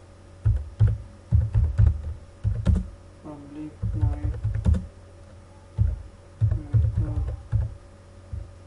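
Computer keyboard being typed on in quick bursts of keystrokes with short pauses between them, as code is entered.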